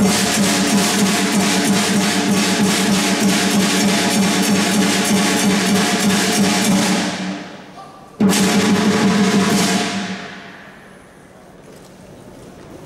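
Dragon dance accompaniment of drums and cymbals beating a fast rhythm over sustained ringing tones, fading out about seven seconds in. One final loud crash follows about a second later and rings away over a couple of seconds, closing the routine.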